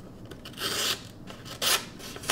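Tactile Knife Co. Osprey fixed-blade knife slicing through a hand-held sheet of paper in a sharpness test, with two short cutting strokes, one about half a second in and a briefer one near the end. The blade is super sharp out of the box.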